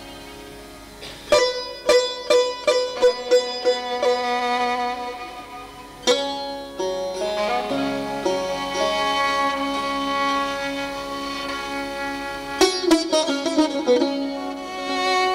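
Live Indian-Persian string music in the Persian mode Dastgah-e Nava. Phrases of sharp, repeated plucked lute notes sound over held bowed-string tones, and a quick flurry of plucked notes comes near the end.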